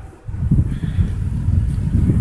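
Wind buffeting the phone's microphone: an irregular, fluttering low rumble that picks up a fraction of a second in.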